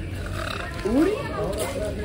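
Outdoor background with distant people's voices and a short rising call about a second in.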